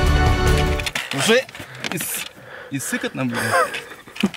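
Background music that cuts off about a second in, followed by a person's voice in short, broken utterances.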